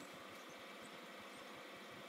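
Faint steady low hum with no distinct events, at about the level of background noise.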